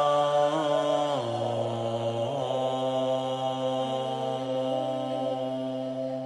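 A man chanting a Tibetan Bon mantra in a deep voice on long held notes. The pitch shifts about a second in and again a second later, and the chant slowly grows quieter.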